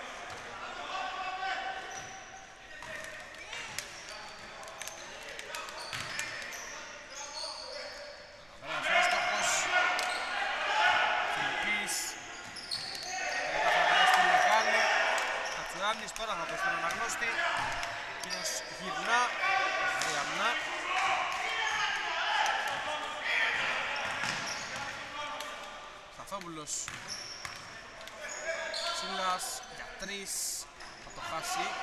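Basketball bouncing on a hardwood gym court, with shoe squeaks and players' voices echoing in the hall; the voices get louder and busier from about a third of the way in.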